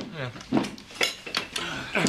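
Crockery clinking and knocking: a mug set down among dishes, three or four sharp knocks about half a second apart.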